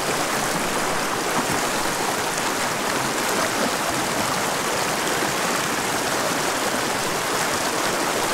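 Small rocky mountain creek rushing steadily over a shallow riffle of stones, a constant rush of water.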